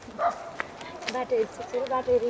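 High-pitched voice, most likely a young girl's, making short wavering sounds without clear words, with a few sharp clicks.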